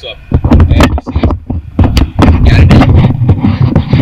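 Loud, distorted rumbling with repeated thumps on the camera's microphone, starting about a third of a second in and lasting to a cut near the end.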